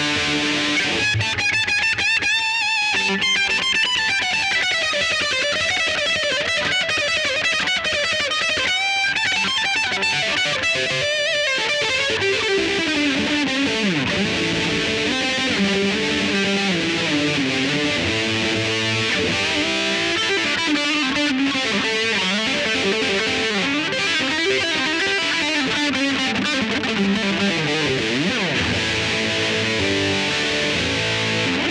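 Electric guitar played through a ProCo RAT distortion pedal: continuous distorted riffs and lead lines with sustained notes and a few swooping pitch slides.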